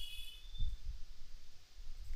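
Faint low rumble of microphone and room background noise, with no distinct event.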